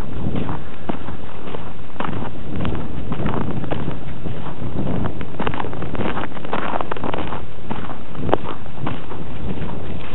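Wind buffeting the microphone, with footsteps crunching on snow at a walking pace, about two steps a second. A single sharp click comes about eight seconds in.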